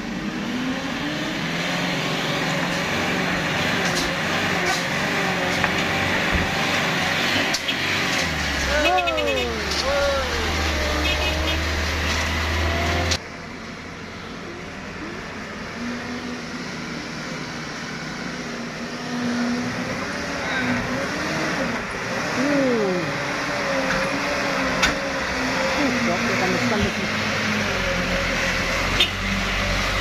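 Small trucks' engines running, with people's voices calling out over them. The sound changes abruptly about 13 seconds in, as at a cut.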